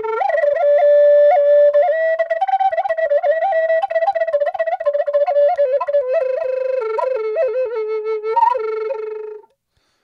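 Native American flute playing a solo melodic phrase decorated with embellishments: quick grace-note flicks and tongued ornaments between longer held notes. It settles onto a low held note and stops shortly before the end.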